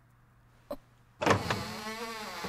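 A short click, then about a second in a loud, long creak whose pitch wavers up and down.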